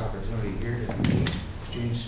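Indistinct murmur of several voices around a meeting table, with a sharp knock about a second in.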